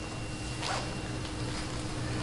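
Room tone: a low steady hum with a faint steady high whine, and one faint short noise about two-thirds of a second in.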